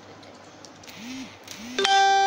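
Faint scratching of pencils tracing on paper, with a couple of soft hummed sounds. Near the end, a loud, steady musical note with many overtones cuts in: background music starting.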